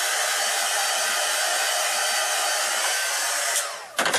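Craft heat tool blowing steadily as it dries ink on acetate, then switched off near the end, its fan winding down.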